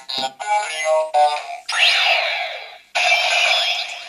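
Kamen Rider Fourze Driver toy belt playing its generic triangle-socket sound effect through its small built-in speaker after a gashapon Astro Switch is switched on. It begins with a run of stepped electronic beeps, rises into a glide, breaks off briefly, then plays a second electronic burst.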